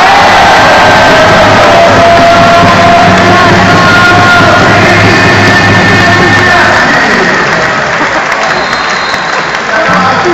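Arena crowd breaking into loud cheering at the end of a rally, mixed with loud music. The din starts suddenly and eases a little after about seven seconds.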